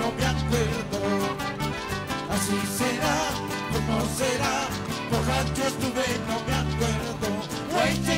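Live Andean huaycheño band music: a singing voice carries a wavering melody over a steady, repeating bass beat.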